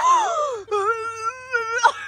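A person's drawn-out wailing moan: a falling cry, then a single held note lasting about a second that stops abruptly.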